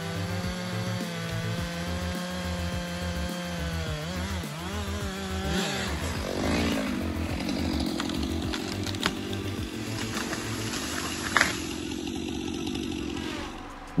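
Stihl MS 462 two-stroke chainsaw running at high revs while cutting into a tree trunk, holding a steady pitch. About five seconds in, the note wavers and drops to a lower, rougher running sound, with one sharp click near the end before it stops.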